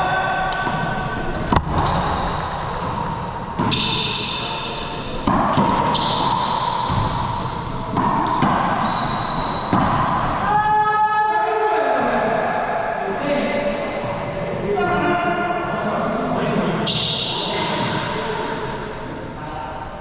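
A racquetball doubles rally in an enclosed court: the rubber ball cracks sharply off racquets and walls every second or two, echoing. Between the hits, sneakers squeak on the hardwood floor in short high squeals.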